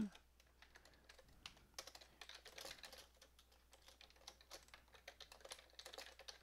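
Computer keyboard typing: faint, quick, irregular key clicks, starting about a second and a half in.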